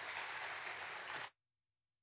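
Audience applauding, cut off abruptly a little over a second in, then silence.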